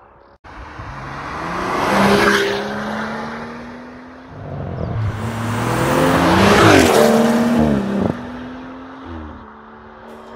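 BMW M240i's turbocharged straight-six through a REMUS sport exhaust, driving past twice under acceleration. Each pass swells to a peak and fades, the louder second one with the engine pitch rising and falling.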